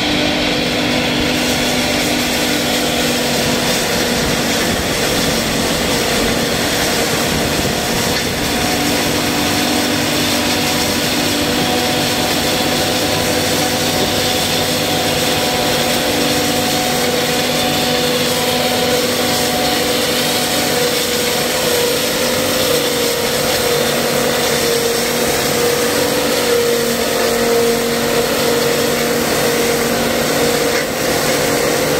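Tractor-driven forage mill (Molino 24 Monster Blue) running steadily, chopping dry stalks picked up off the ground and blowing them up its spout, over the tractor's engine; a loud, continuous mechanical din with a steady hum.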